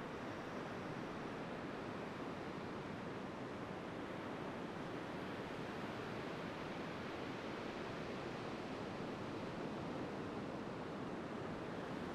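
Steady, even rush of sea surf washing onto a sandy beach.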